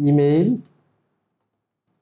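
A man's voice speaking briefly, cut off about half a second in, then near silence.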